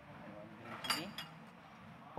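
A few faint clinks of kitchen utensils and dishes, bunched about a second in, over low background hiss.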